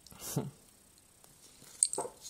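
Hands handling the small plastic pieces of a Kinder Surprise toy scooter while trying to fit them together, with faint rustling and one sharp plastic click near the end. A brief low murmur comes about a third of a second in.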